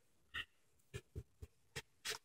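Scissors snipping through toy-box packaging: about five faint, short clicks as the blades close.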